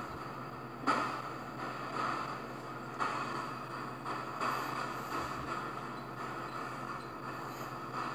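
Steady background hiss with a low electrical hum, broken by a few faint clicks about a second in, around three seconds and a little later.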